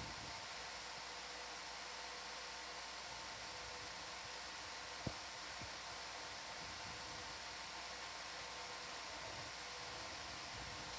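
Steady hiss with a faint steady hum from the ROV control room's audio feed, and one sharp click about five seconds in.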